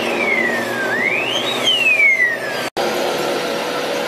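Emergency vehicle siren wailing, its pitch sliding down, up and down again over the noise of running vehicles. It cuts off abruptly about three-quarters of the way in, leaving a steady hum.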